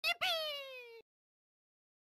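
A short, high, cat-like mew: a quick chirp, then one longer call that falls in pitch and cuts off sharply about a second in.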